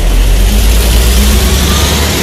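City bus engine running close by as the bus pulls away from the kerb: a loud, steady deep rumble with a hiss above it.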